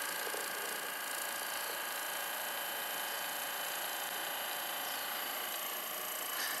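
Hypervolt percussion massage gun with its round ball head running steadily, pressed into the thigh muscle: an even motor whir with a few thin high tones.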